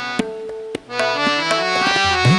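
Harmonium playing a stepping melodic phrase in Raag Mishra Des, with light tabla strokes, as accompaniment to a thumri; the tabla's deep bass resonance drops out here and returns just after.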